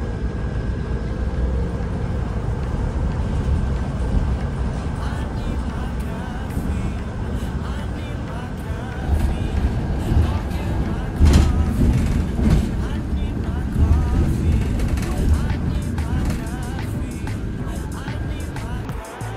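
Ride heard from inside a city bus's cabin: steady low engine and road rumble with a faint steady whine, and a knock about eleven seconds in.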